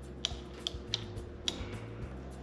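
A few light metallic clicks, about four in two seconds, as the clutch lever's pivot bolt and nut are worked loose by hand.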